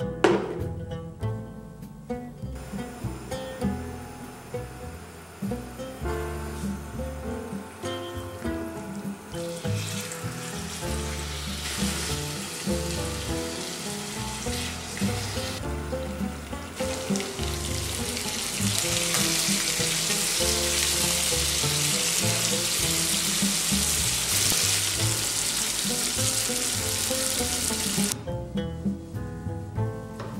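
Marinated chicken pieces shallow-frying and sizzling in a pan, starting about a third of the way in and getting louder and steadier in the second half, over background music.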